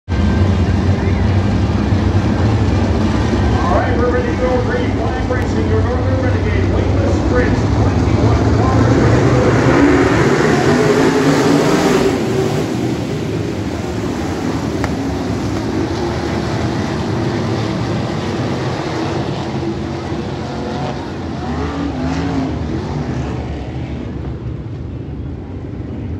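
Engines of a pack of open-wheel dirt-track race cars running on the oval, a loud steady din that peaks as the field passes about ten to twelve seconds in, then drops and eases off.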